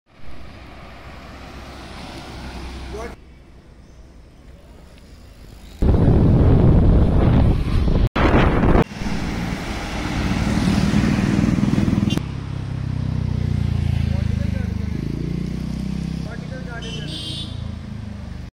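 Road traffic sound: passing cars and road rumble, loudest from about six to twelve seconds in, with voices in the background. It comes in several short pieces with sudden cuts between them.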